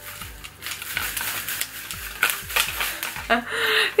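Large round sequins on a dress clattering and rustling as the dress is shaken: a dense, irregular run of small clicks.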